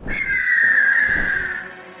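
Sound effect of a large bird's call: one long, high cry that glides slowly downward in pitch and fades over about a second and a half, over soft background music.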